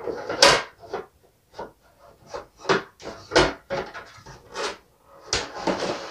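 Hands pulling a plastic toy building out of its cardboard box: irregular scraping, rustling and knocks of plastic and cardboard, the loudest about half a second in and a longer rustle near the end.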